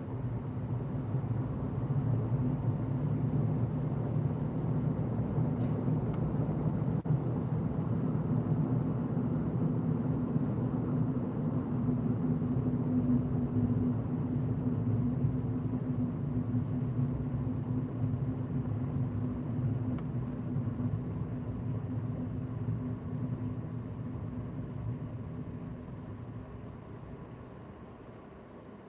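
Road and engine noise of a car heard from inside the cabin while driving, a steady low hum. It dies away over the last few seconds as the car slows and comes to a stop in traffic.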